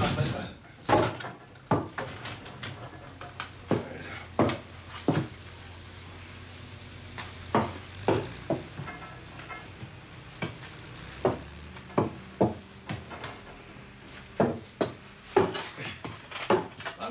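Irregular scuffs, knocks and clicks of people moving and stepping carefully on a hard floor, about a dozen sharp ones spread unevenly, over a steady low hum.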